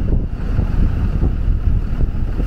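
Wind buffeting the microphone in a constant low, uneven rumble, over the noise of street traffic.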